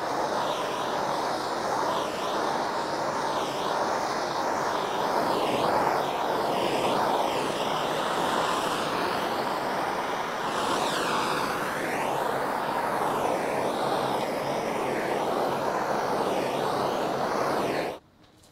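Handheld gas torch burning with a steady hissing rush as its flame is swept over the wet epoxy resin of a carbon fiber part, heating it to draw air bubbles to the surface and pop them. The tone shifts slightly as the torch moves, and the sound stops suddenly near the end.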